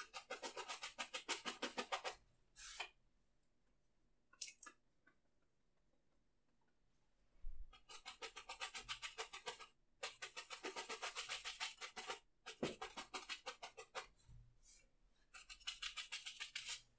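Bristle brush stroking wet oil paint onto a canvas in quick repeated dabs, about eight a second, in bursts of one to two seconds with short pauses between, as small evergreen trees are painted in.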